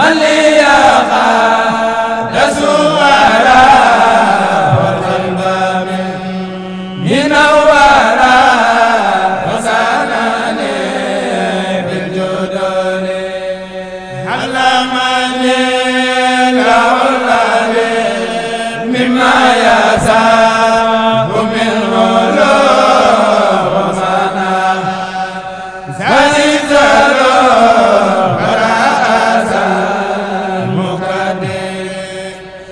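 Unaccompanied male chanting of a Mouride khassida, an Arabic devotional poem sung in long, held, ornamented lines. Each new phrase comes in louder, about every five to seven seconds.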